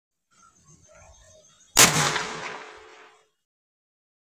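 A hammer blow on concrete sets off a small homemade impact firecracker (a 'hathoda bam', hammer bomb), giving one sharp bang a little under two seconds in that dies away over about a second and a half.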